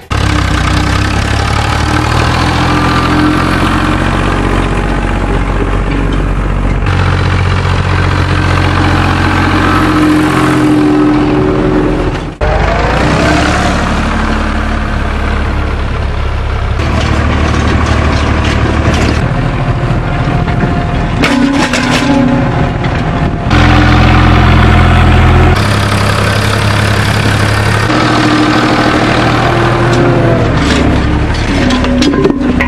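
Zetor 5211 tractor's three-cylinder diesel engine working in the field, heard in several spliced takes whose engine note changes abruptly from one to the next. About twelve seconds in, the engine revs up.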